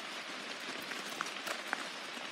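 Light rain on forest foliage: a steady soft hiss with a few scattered drips ticking on leaves.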